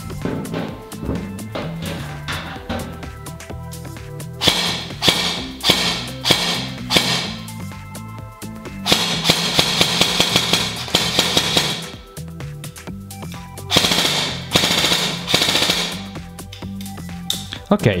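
VFC HK416 airsoft electric rifle (AEG) on a 7.4 V battery, firing full-auto bursts with a fast rate of fire and a gearbox sound that is a bit too high-pitched. The three longest bursts come about 4, 9 and 14 seconds in.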